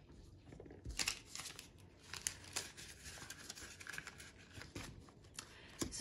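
Polymer banknotes and a clear plastic binder pocket rustling and crinkling as bills are handled and slid into the pocket, with scattered light clicks and a soft thump about a second in.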